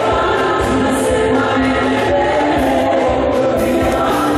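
Church choir singing a hymn in long held notes, with a steady low beat underneath.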